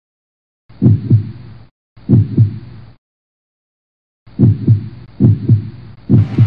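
Heartbeat sound effect: four low, loud double thumps (lub-dub), each pair of thumps about a quarter second apart. They come as two beats, a silent pause of over a second, then two more beats.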